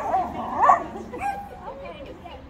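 Small dogs yipping on their leashes: a sharp yip right at the start and another just under a second in, then fainter whining sounds that die down.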